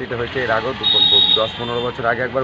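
A man's voice speaking, with a thin high steady tone that lasts about a second from just before the middle.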